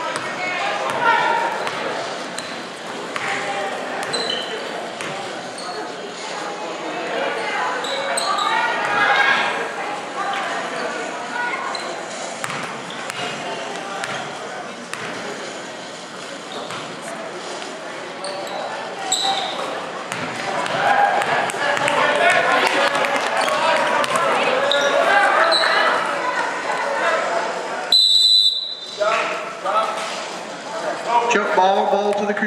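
Indoor high school basketball game: voices of players and spectators chattering and calling out over a basketball bouncing on the hardwood floor, echoing in the gym. Near the end a referee's whistle blows once, briefly.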